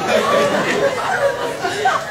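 Indistinct chatter of many voices talking over one another in a large lecture hall.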